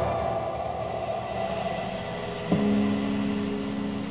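Amplified band sound fading away after the end of a song, then about two and a half seconds in a single low note starts and holds steadily.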